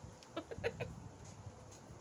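A bird's short clucking calls, about five in quick succession in the first second.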